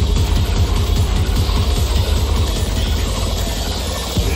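Loud dubstep music over a big festival sound system, dominated by heavy, dense bass with quick low hits.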